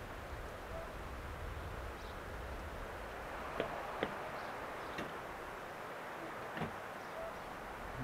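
Bicycle rolling slowly along a dirt path, heard as a steady low rumble of tyres and wind on the helmet camera's microphone that fades about five seconds in, with a few faint clicks and ticks.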